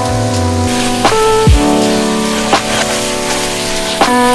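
Ground beef and onions sizzling as they fry in a steel pot, with a hiss that thickens about a second in, under instrumental background music with a few drum beats.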